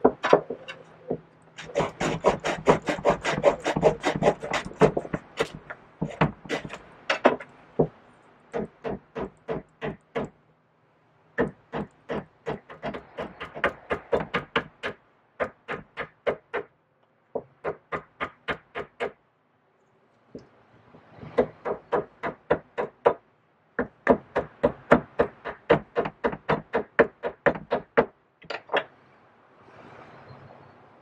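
Small carving axe hewing a wooden spoon-and-fork blank: quick, sharp chopping strokes into the wood, about three to four a second, in runs broken by short pauses.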